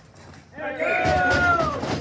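A long, loud shout from a man's voice, starting about two-thirds of a second in and held on one pitch before falling away near the end, with other voices mixed in around it.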